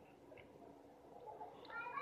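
Near silence, broken near the end by a faint, brief pitched call.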